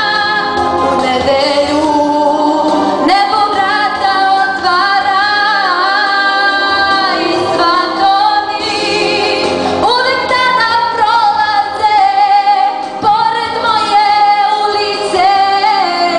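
A girl singing live into a handheld microphone: a melodic female vocal line with several long held notes.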